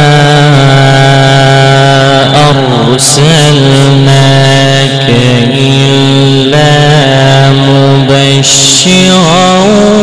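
A male Quran reciter chanting in the drawn-out melodic tajweed style. One voice holds long notes with wavering ornaments, pausing briefly a few times, and steps up in pitch near the end.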